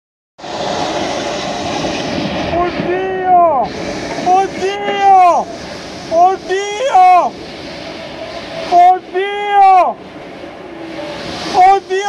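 Heavy rain pouring steadily, with a person's voice crying out over it again and again in loud, drawn-out shouts that rise and fall in pitch.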